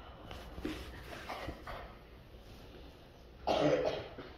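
A person coughing once, a short loud cough about three and a half seconds in, in a quiet hall with faint scattered sounds before it.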